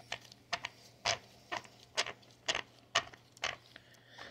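Light handling clicks from a rotary tattoo pen machine being turned over in gloved hands, about two clicks a second, fairly evenly spaced.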